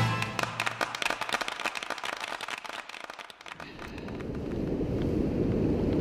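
A rapid run of sharp crackling clicks that thins out and fades over the first three seconds, followed by a low steady rush of wind and river water on the camera microphone that swells in and holds.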